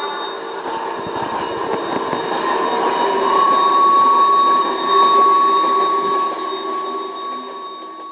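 A train rolling past, its wheels running on the rails with a steady high ringing tone above the rumble. It fades away over the last couple of seconds.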